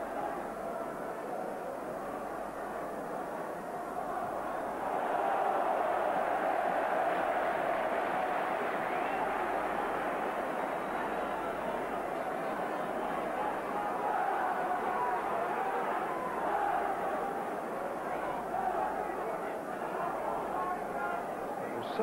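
Football stadium crowd: the massed noise of thousands of spectators' voices, swelling about five seconds in and then holding steady.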